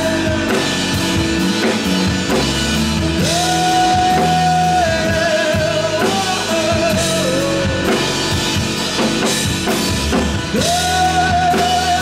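Live rock band playing a song: a lead singer holding long sung notes over acoustic guitar, electric guitar, bass guitar and drum kit.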